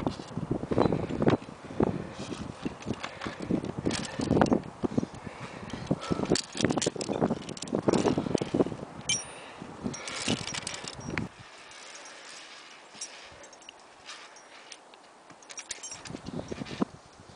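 Metal via ferrata carabiners and lanyard clips clinking and knocking together, mixed with the rubbing and bumping of the camera being handled against the climber's harness. About eleven seconds in this gives way to a quieter hiss with a few scattered clicks.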